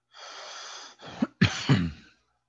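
A person coughing: about a second of breathy noise, then three quick coughs, the last one the longest.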